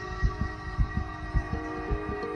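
A heartbeat sound, low double thumps at about four beats in two seconds, fast like a racing pulse, over a sustained ambient music drone.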